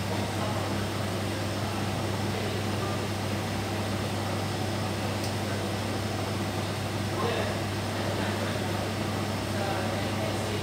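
Steady low machine hum with a strong low tone, unchanging throughout. Faint voices come in briefly about seven seconds in.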